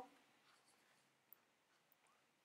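Near silence: faint room tone with a single soft click about a second in.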